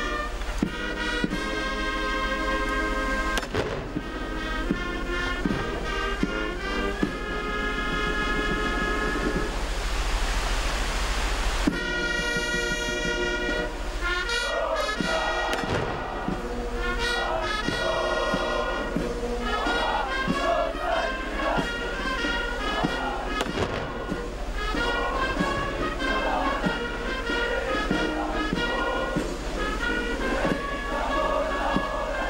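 Military brass band playing ceremonial music, with sustained chords of held wind notes and a hiss-like wash of noise for about two seconds near the middle.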